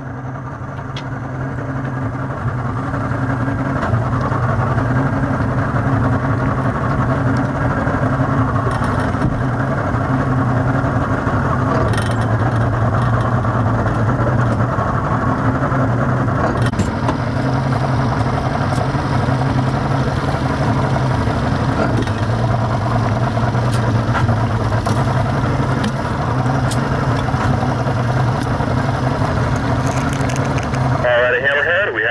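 Motorboat engine running steadily, swelling over the first few seconds and then holding a constant drone as the boat takes a disabled sailboat under tow.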